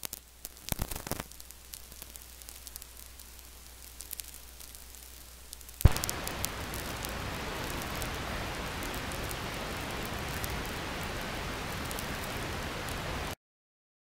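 Faint hiss with scattered clicks, then a sharp pop about six seconds in, followed by a steady loud hiss that cuts off suddenly near the end.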